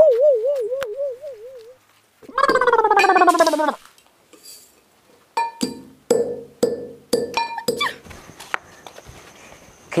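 A wobbling comic sound effect, then a loud sound that falls in pitch. From about five seconds in, a metal pestle strikes a steel mortar about six times, roughly twice a second, each hit ringing briefly as grain is pounded.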